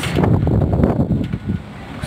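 Strong, gusty typhoon wind buffeting the microphone as a low, uneven rumble, easing briefly near the end.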